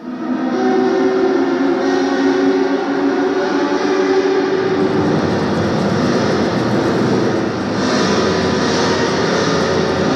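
A loud, dense soundtrack drone: a thick rumbling noise with several held tones over it. It starts suddenly and keeps steady, with a slight dip and change in texture near the end.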